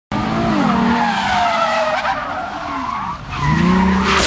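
Car engine revving hard with tyres squealing as the car is driven past at speed; the engine note falls over the first couple of seconds, then climbs again near the end.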